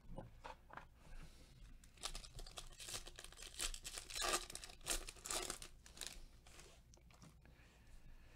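The plastic-foil wrapper of a Topps Chrome jumbo baseball card pack being torn open and crinkled by gloved hands: a run of crackling rips from about two seconds in until about six seconds in.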